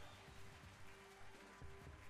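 Faint background music from an online slot game, a few soft held tones with light low beats under them.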